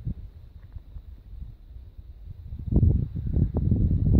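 Wind buffeting the camera's microphone: an irregular low rumble that swells into a louder gust a little under three seconds in.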